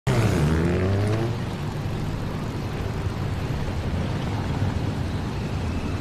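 Motorcycle engine running as the bike rides by, its pitch falling over the first second or so, then settling into a steady low rumble.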